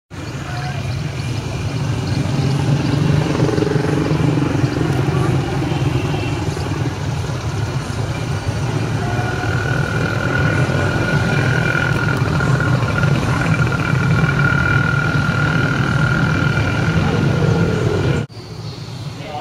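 Steady outdoor street noise, mainly a motor vehicle engine running, with indistinct voices mixed in. A steady high whine is held for several seconds in the second half.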